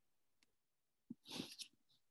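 Near silence, broken about a second in by a brief, faint breathy sound lasting about half a second.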